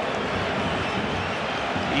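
Football stadium crowd noise, a steady din of many voices from the stands.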